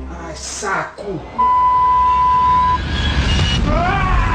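A pitched cry that falls steeply in pitch, then a steady high beep held for just over a second, then a rising yell starting near the end, a frightened person in a darkened elevator.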